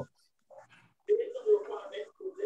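A soft, indistinct murmuring voice heard over a video call, starting about a second in after a short pause.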